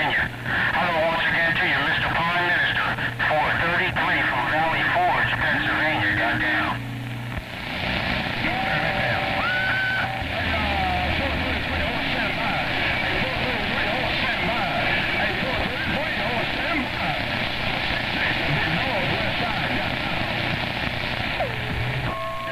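CB radio receiver on the 11-metre band playing distant single-sideband stations: garbled, wavering voices through static for the first several seconds, then steady band hiss with a few short heterodyne whistles.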